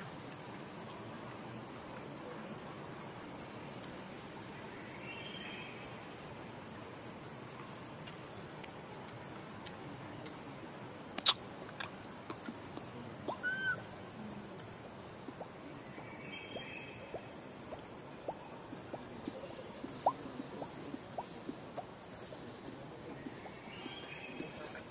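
Forest ambience: a steady high-pitched insect drone over a soft hiss, with scattered light clicks, the sharpest about eleven seconds in, and a few faint distant calls.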